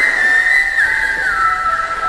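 A whistled tune in the soundtrack: one note swoops up and holds, then steps down twice to a lower note that is held on.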